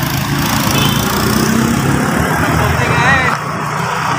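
A motorbike passing close by on the road, its small engine running steadily over general street traffic noise.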